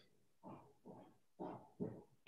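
A dog barking faintly, four short barks about half a second apart.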